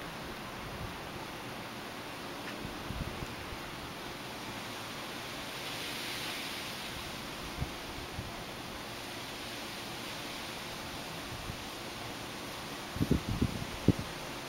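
Steady background hiss with faint rustling, swelling briefly about six seconds in, and a few low bumps close together near the end.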